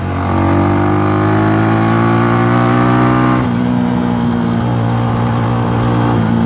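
Rusi Classic 250 motorcycle engine, with an aftermarket bullet exhaust, revving up under open throttle for about three seconds, then dropping sharply to a lower steady note when the throttle is let go. It demonstrates a twist-grip that is too slow to spring back on its own.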